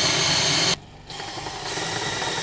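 DeWalt cordless drill driving a screw into a pine board, its motor running steadily, then stopping suddenly about three-quarters of a second in. After a brief pause a quieter steady sound follows.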